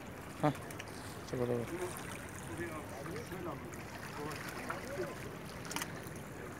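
Steady wash of small water lapping at a rocky shoreline, with a man's short shouts early on and faint voices behind; a sharp click near the end.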